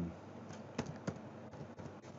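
Computer keyboard typing: a handful of separate keystrokes spaced irregularly, as a name is typed in.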